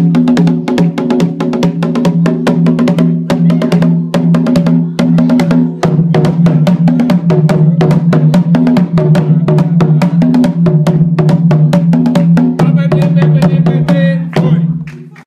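Three dunun (doundoun) drums of different sizes played with sticks in a fast, dense rhythm, the deep drumheads ringing under each stroke.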